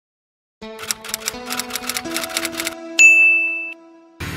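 Typewriter sound effect: a quick run of keystroke clacks for about two seconds, then a single bright bell ding that rings out for under a second.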